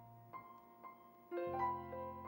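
Solo piano music, slow and soft: a few single notes, then a fuller chord over a low bass note about one and a half seconds in.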